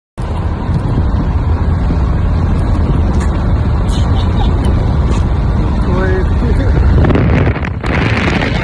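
Wind rushing past an open window of a moving car and buffeting the microphone, with road noise underneath: a loud, steady, deep rush.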